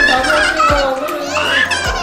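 A young girl's high-pitched squeals and vocalising, rising and falling in pitch, over background music with a steady beat.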